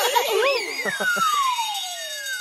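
Cartoon sound effect: warbling pitched tones for about a second, then one long whistle-like glide falling steadily in pitch.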